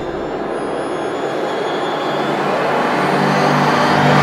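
A steady rushing noise that slowly swells louder and brighter, with sustained musical tones coming in about three seconds in, building into music.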